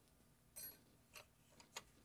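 Near silence broken by a few faint, short clicks, about four in two seconds.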